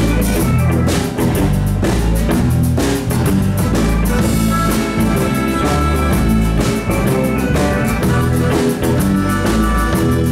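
Live blues band playing an instrumental break over a steady beat: drum kit, bass guitar, electric and acoustic guitars and keyboard, with a harmonica played cupped against a microphone.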